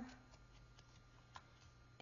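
Near silence: faint room tone with a low steady hum and one small click about a second and a half in.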